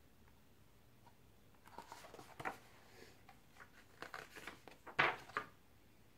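Faint paper rustles and light knocks as a large picture book is handled and its page turned. The sounds come as a short string over a few seconds, the loudest about five seconds in.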